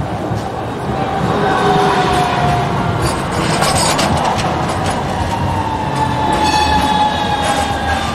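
Bombardier CR4000 tram rolling around a tight street curve at close range: a rumble of wheels on the grooved rails, with a thin, wavering squeal from the wheels on the curve from about a second in.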